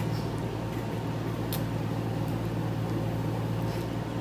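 A steady low hum over an even background hiss, with a faint click about one and a half seconds in.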